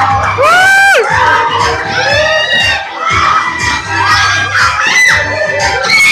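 An audience shouting, whooping and cheering loudly over music with a repeating bass beat, with shrill rising-and-falling whoops near the start.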